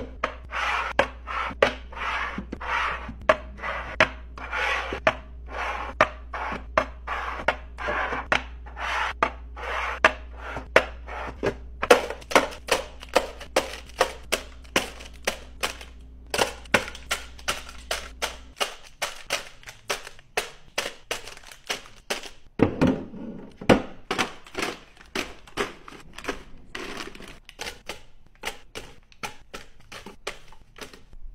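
Items being handled and set down one after another during restocking: a quick run of sharp taps, clicks and knocks, about two or three a second, with rubbing and rustling in between.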